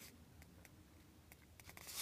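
Near silence, with a few faint clicks and a soft rustle near the end as trading cards are slid over one another in the hand.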